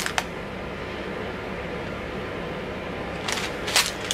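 Plastic zip-lock bags of rhinestones handled over a steady background hum: a single click just after the start, then a short rustle and crinkle of the plastic near the end.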